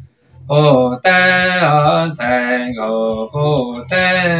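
A man singing unaccompanied in Hmong, a slow chant-like melody of long held notes; after a short pause for breath, the singing resumes about half a second in.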